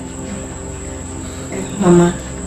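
Faint background music under a steady high-pitched whine and a low hum. A voice speaks briefly near the end.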